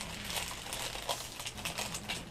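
Packaging crinkling and rustling as it is worked open by hand, a run of small irregular crackles.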